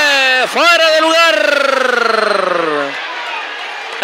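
A male football commentator's excited call: a few quick words, then one long drawn-out word that falls in pitch, followed by a moment of quieter background noise.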